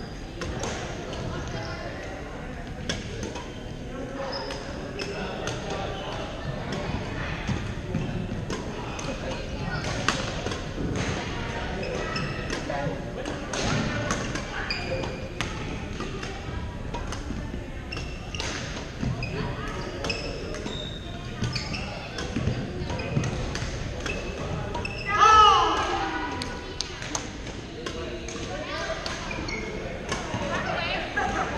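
Badminton rallies in a large, echoing gym hall: sharp racket strikes on shuttlecocks come from several courts, over a murmur of players' voices. About twenty-five seconds in, a louder squeak that bends down in pitch stands out.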